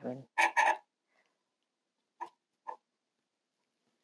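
A woman's short non-word vocal sounds right at the start, then quiet, with two faint short clicks about half a second apart a little over two seconds in.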